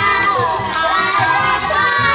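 A group of young children singing loudly together along with a recorded Mandarin children's song.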